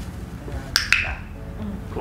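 Hand-held training clicker clicking twice in quick succession, marking the blue-and-gold macaw's wings-up behaviour for a treat.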